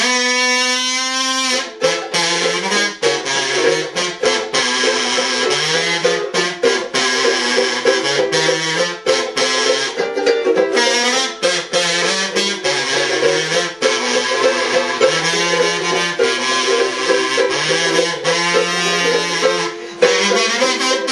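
Regal Wendell Hall ukulele strummed in a rhythmic chord accompaniment while a Wurlitzer gramophone-horn kazoo buzzes the melody over it. A long held kazoo note wavers at the start, and the strumming comes in about a second and a half in.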